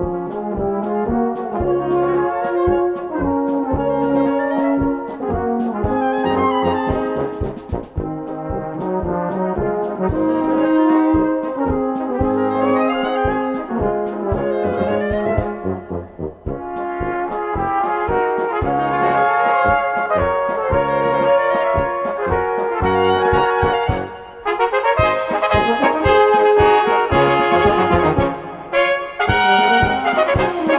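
A brass band (Blaskapelle) plays a polka in 2/4 with an oom-pah accompaniment: bass notes on the beat, afterbeat chords, a flugelhorn and tenor horn melody, and woodwind runs. About 25 s in, the band drops out briefly and comes back louder in a forte passage led by trumpets and tenor horns with baritones.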